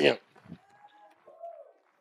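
The preacher's word ends, then a quiet pause holding a few faint, short, drawn-out vocal sounds, a second or so apart, from the congregation.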